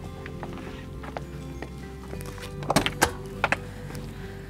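Background music under a few sharp clacks, loudest about three seconds in, from the latches and doors of a motorhome's basement storage compartments being unlatched and swung open.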